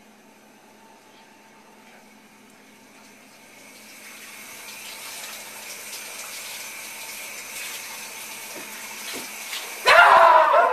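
Shower running: a steady hiss of falling water, faint at first and growing louder from about three seconds in.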